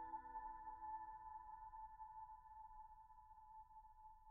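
Faint ambient background music dying away: a held chord fades out, its lower notes gone after about a second, leaving one thin high tone lingering quietly.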